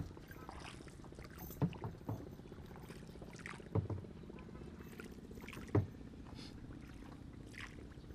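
Faint outdoor ambience: a low steady hum broken by a few dull knocks, the loudest about two-thirds of the way through.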